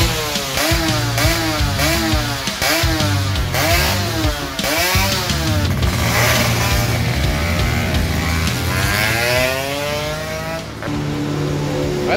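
Ported 116 cc two-stroke Yamaha F1ZR engine revved in quick blips, rising and falling about once or twice a second. Later comes a long rising rev that drops away near the end.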